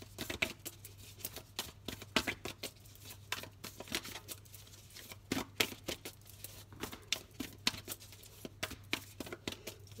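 A deck of oracle cards being shuffled hand over hand. It makes a continuous run of quick, irregular soft flicks and taps of card stock.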